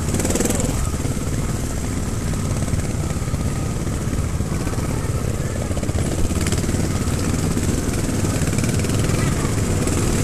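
Trials motorcycle engines running steadily at low throttle, an even rapid putter as the bikes are ridden slowly.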